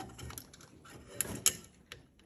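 Handling noise of a license-plate bracket being pushed onto its mounting stems, with a few sharp clicks, the loudest two about a second and a half in, as it seats and locks into place.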